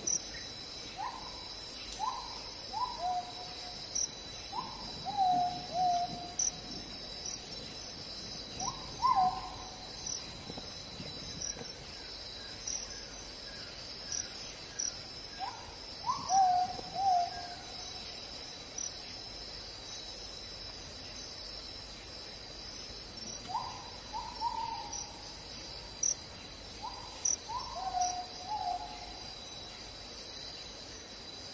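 A bird calls in clusters of short notes, each sliding down in pitch, in several bursts of two to four notes. A steady high-pitched insect chorus runs under it.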